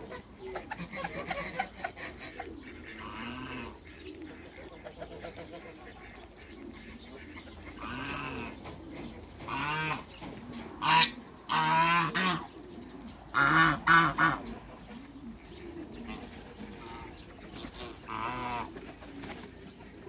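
Domestic geese honking, with a run of loud honks about halfway through and softer poultry calls before and after.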